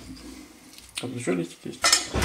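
A few light clinks and knocks of kitchenware, the sharpest just before the end, with a man's short spoken 'A' in between.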